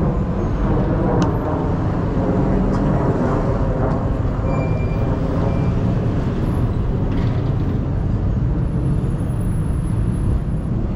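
Steady road traffic noise: cars driving past on a multi-lane street, with a continuous low rumble.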